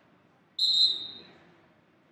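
Wrestling referee's whistle: one short, shrill blast about half a second in that trails off, stopping the action on the mat.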